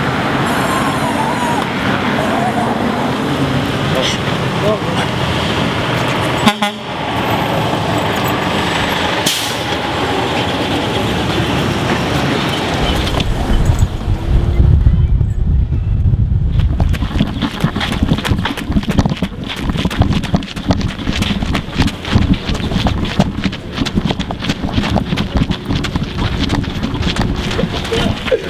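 Indistinct chatter of a group of people outdoors. About halfway through it gives way to a low rumble of wind on the microphone, then a fast, uneven patter of running footsteps as the group jogs.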